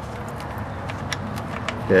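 Hot engine oil trickling from around a loosened oil drain plug on a 2013 VW Beetle 2.0L turbo as the plug is backed out by hand, over a steady rushing noise, with a few faint clicks.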